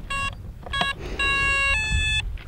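Electronic startup beeps from the Arrows Trekker RC plane's electronics as the flight battery is connected: two short beeps, then a long tone that steps up to a higher note near the end. This is the speed controller's power-up and arming signal.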